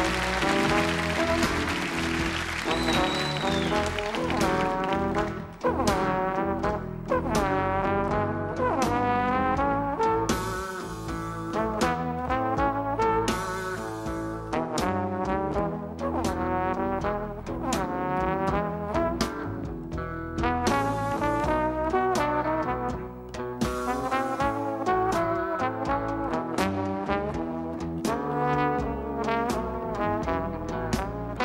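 Trad jazz band with a trombone solo, the trombone sliding and bending between notes over a rhythm section of guitar, string bass and drums keeping a steady beat.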